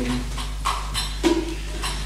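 A held choir note dying away just after the start, then about five sharp, irregular percussion taps with a brief pitched note among them, filling the gap between sung phrases.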